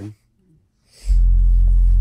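A loud, steady low test tone around 43 Hz from a large studio monitor, switched on suddenly about a second in. It drives a 12-inch PVC Helmholtz resonator tube at its tuning frequency, to find what the tube is tuned to.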